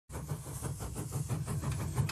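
A train running on rails: a low, steady rumble with a quick, even clatter, about seven beats a second.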